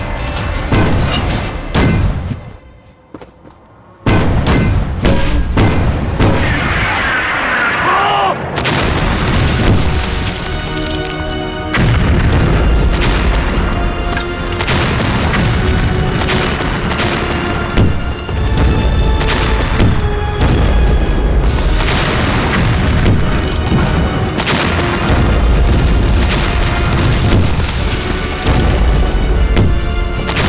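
Film sound effects of field guns firing and shells exploding: a dense run of heavy booms with dramatic music underneath. The sound drops away briefly near the start, and a falling whistle comes before the blasts build from about twelve seconds in.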